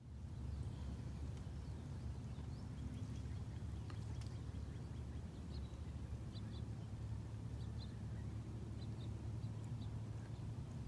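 Shoreline outdoor ambience: a faint, steady low rumble of wind and water, with short high bird chirps scattered through.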